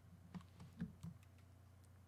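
A few faint, soft clicks of a computer keyboard and mouse, bunched in the first second, over a low steady hum.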